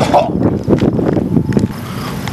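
Wind buffeting an outdoor camera microphone, a loud irregular rumble broken by scattered knocks.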